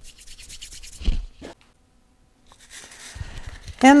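Hands rubbing and brushing together to shake tiny seeds and chaff off the palms, a light scratchy rustle, with a soft thump about a second in.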